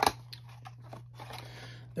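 Cardboard trading-card box being opened by hand: a sharp snap right at the start as the sealed top flap comes free, then soft scraping and rustling of the cardboard.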